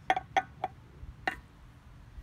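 Four short, sharp clicks, three in quick succession and then one more about a second in: a person clicking their tongue to call a dog.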